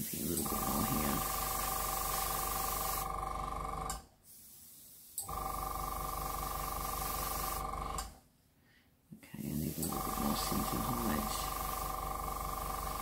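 Small airbrush compressor running with a steady hum and the hiss of air through the airbrush, in three spells with two brief stops, about four and eight seconds in.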